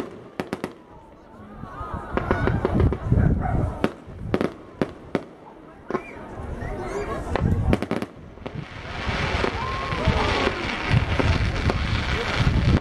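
Fireworks display: a string of sharp bangs and pops at irregular intervals, turning into a denser, steadier crackling hiss from about eight seconds in.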